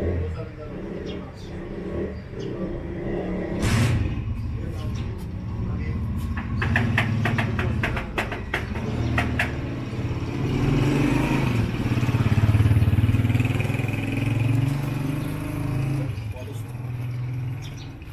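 Street noise: a motor vehicle engine running close by, louder in the second half, with voices. Partway through comes a quick run of about ten sharp knocks or taps.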